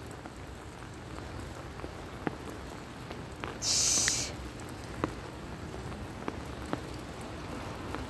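Steady rain falling, with scattered louder raindrop ticks and a brief hiss a little before halfway.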